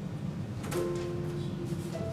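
An electronic keyboard chord starts suddenly about three-quarters of a second in and is held for about a second. A single higher note follows near the end.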